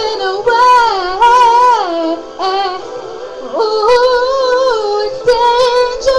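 A female voice sings long, held, wavering notes of a slow ballad over backing music, in two phrases, sliding up into the second about halfway through.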